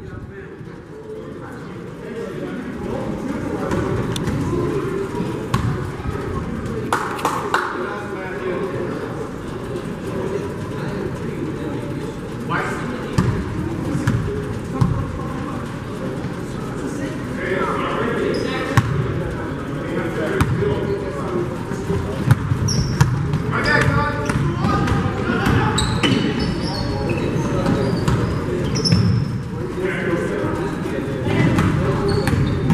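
A basketball being dribbled on a hardwood gym floor during play, with scattered sharp knocks among the indistinct voices of players and spectators.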